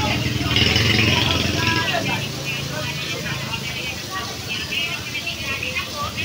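A motor vehicle's engine running close by, a low hum that fades out about four seconds in, over background voices.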